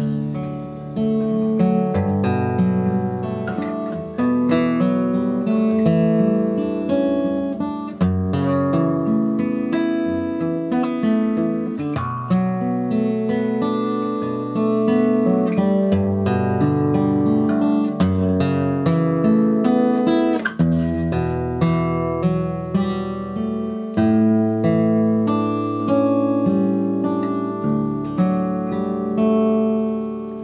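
Steel-string acoustic guitar playing the chord progression of a song's bridge, with the chords and bass note changing about every four seconds.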